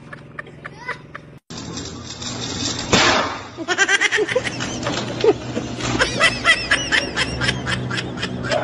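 A sudden loud noise about three seconds in, followed by people laughing and shrieking in quick repeated bursts over background noise.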